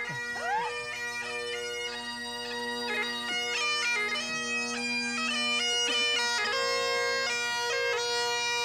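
Great Highland bagpipes played solo: steady drones sounding under a chanter melody that moves between held notes.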